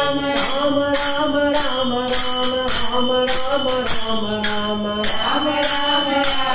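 A group of voices singing a devotional bhajan chant in unison, with long held notes that step slowly up and down. Small metal hand cymbals keep time with bright strikes about twice a second.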